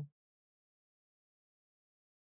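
Silence: the tail of a spoken word at the very start, then no sound at all.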